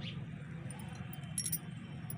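Glass bangles on a wrist clinking briefly, a few light jingles about one and a half seconds in, over a low steady background hum.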